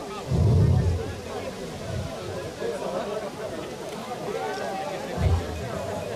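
Murmur of off-microphone voices and chatter from a gathered crowd, with music underneath. Two short low thuds, one about half a second in and a smaller one near the end.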